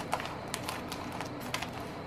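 Scissors snipping through a thin plastic poultry shrink bag, as several quiet, irregular clicks with plastic crinkle.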